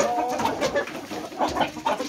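Chickens clucking, with a short pitched call at the start.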